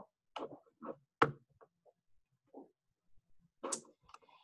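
A handful of faint, short clicks and small noises with silence between them, the sharpest about a second in.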